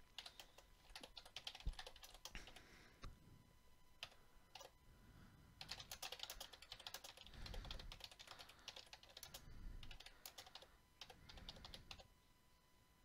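Faint computer keyboard typing: runs of quick key clicks with short pauses between them.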